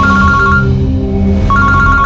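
Mobile phone ringtone: a rapid electronic trill on two alternating notes, ringing in short bursts of under a second with brief gaps, over background music.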